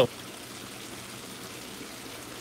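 Steady, even rush of running water.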